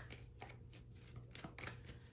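Faint shuffling and handling of a deck of tarot cards, soft rustling with a few light clicks of card edges.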